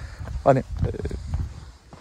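A man says a single short word about half a second in, over a steady low rumble that fades near the end.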